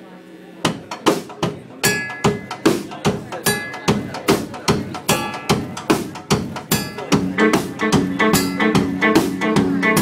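Live rock band starting a song: a drum kit beating about two and a half hits a second with electric guitar, and the guitar chords fill out fuller about seven seconds in.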